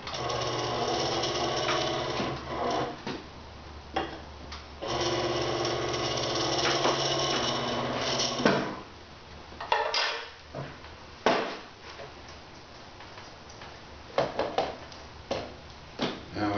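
The electric motor of a Semel Baby-E kart tire changer runs with a steady hum in two stretches of a few seconds each, turning the wheel while the bead tool works the tire bead back onto a five-inch kart rim. Several sharp metallic knocks follow as the tool and tire come off the machine.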